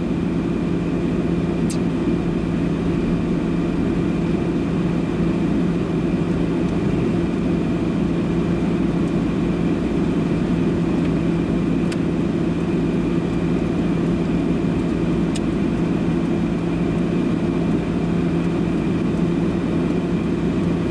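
Steady interior noise of a car driving through city streets, heard from inside the cabin: engine and tyre noise under a constant low hum.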